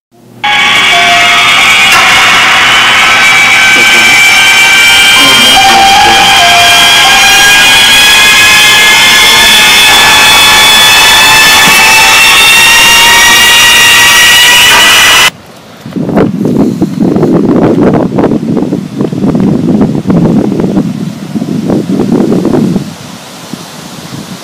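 A very loud, steady hissing drone with several held high tones that cuts off suddenly about fifteen seconds in, followed by an uneven, gusting low rumble like wind on the microphone.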